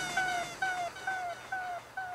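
Dub delay tail: a short synth tone gliding slightly downward, repeated over and over by the echo effect and slowly fading as the track ends.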